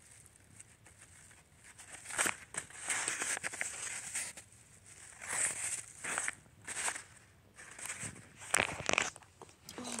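Paper crinkling and rustling in irregular bursts as a homemade paper squishy stuffed with cotton is squeezed and handled in the fingers, starting about a second and a half in.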